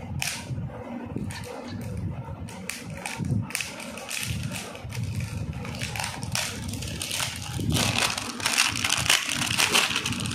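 Clear plastic wrapping crinkling and crackling as it is cut with a small blade and pulled off a spool of nylon thread, with irregular crackles that grow louder and busier in the last couple of seconds.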